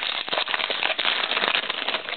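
Trading-card pack wrapper crinkling and crackling as it is torn open by hand, a dense run of small crackles.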